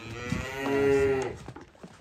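A cow mooing: one long low moo that swells to its loudest about a second in and fades out about half a second later.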